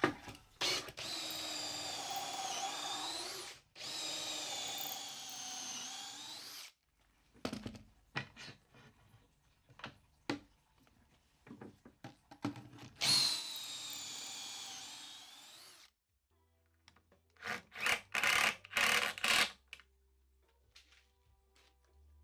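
Cordless drill boring pocket holes with a stepped bit through a pocket-hole jig into plywood, in three long runs whose whine sags in pitch as the bit bites. Short clicks and knocks come between the runs, and a quick string of short loud bursts follows near the end.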